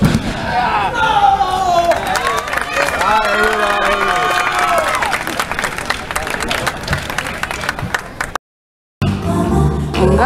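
Wrestling-ring impacts, repeated slams and slaps of bodies on the ring, under shouting and cheering spectators. Near the end the sound cuts briefly to nothing, then pop music begins.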